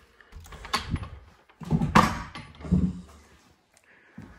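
An old wooden interior door being pushed open by hand, with a few knocks and handling noises, the loudest about two seconds in.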